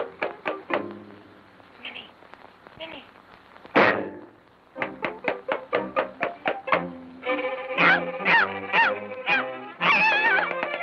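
Early sound-cartoon orchestral score. It plays a run of short, detached notes, goes quieter, then gives one loud sudden hit just under four seconds in. More short detached notes follow, and from about seven seconds the full band plays, with notes that slide up and down.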